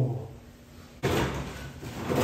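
A short falling voice sound at the start, then a sudden loud noise about a second in that keeps going and slowly fades.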